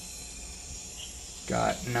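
Peruvian rainforest field recording played from a speaker: a steady, high-pitched chorus of insects.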